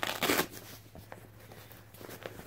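Black fabric carrying bag of a folding shovel being opened: a short ripping rustle near the start as the flap comes free, then soft fabric rustling and small clicks as the bag is handled.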